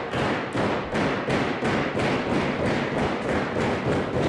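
A small crowd clapping in unison, about three claps a second.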